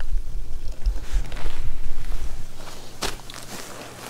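Handling noise from a handheld camera being moved in close: a low rumble with a couple of soft knocks, fading toward the end.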